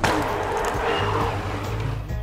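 A mountain bike rushing past on a dirt jump course: a sudden burst of tyre-on-dirt noise that fades away, with background music underneath.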